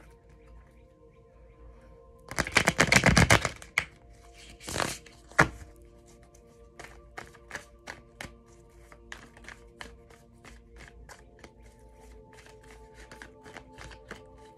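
A tarot deck shuffled by hand: about two seconds in, a loud rapid flurry of card clicks lasting over a second, then a string of light taps, two or three a second, as cards are dropped from one hand to the other. Soft background music with held tones underneath.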